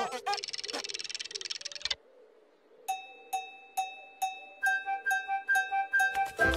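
High-pitched fluttering cartoon chatter for about two seconds, then a short hush, then a sparse tinkling tune of evenly spaced chime-like notes, a little over two a second, with a higher note joining near the middle.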